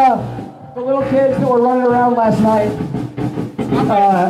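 A rock band playing live, with electric guitar and drums and a man's voice over the music; it dips briefly about half a second in.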